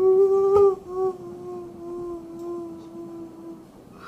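A voice humming one long, steady note. There is a short break just under a second in, and the note is loudest at the start.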